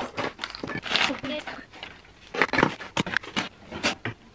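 Rustling and clattering of stored household items being handled and pulled out, with a string of short sharp knocks, a cluster of them around three seconds in.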